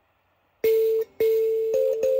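Mbira dzavadzimu keys plucked by the thumbs: after a brief silence, a low note sounds about half a second in and is plucked again about a second in, ringing on with a buzzy rattle from the metal buzzers on the soundboard. A second, higher note joins near the end.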